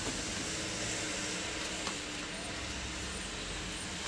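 Steady background hiss with a faint low hum, and a faint click about two seconds in and another near the end.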